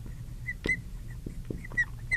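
Marker squeaking on a glass lightboard while words are written: a string of short high squeaks with light taps of the tip between them.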